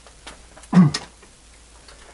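A man's brief hesitant vocal sound, falling in pitch, a little under a second in, with a few faint light clicks around it.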